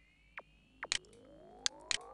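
Synthesizer bass-sweep sound playing thin and quiet through a low-cut EQ that strips away its lower frequencies: a faint set of tones gliding steadily upward, with a few sharp ticks.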